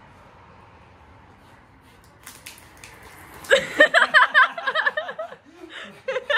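A mouthful of water spat and sprayed out of a man's mouth, a short spluttering splash about two seconds in, followed by people laughing.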